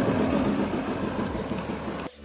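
A boat's inboard diesel engine running steadily, gradually growing fainter.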